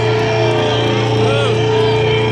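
Loud festival crowd shouting and whooping over a steady droning chord from the PA as a metal band's intro plays.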